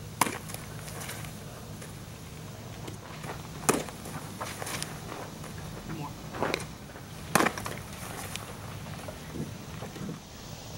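Baseball smacking into a leather catcher's mitt: three sharp pops about three and a half seconds apart, the one near the middle the loudest, with softer knocks in between.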